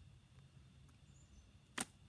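A pause with faint background, broken near the end by a single short, sharp click.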